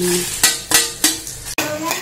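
Dried red chillies and seeds sizzling as they fry in hot oil in a kadai, stirred with a steel spatula that knocks against the pan about three times.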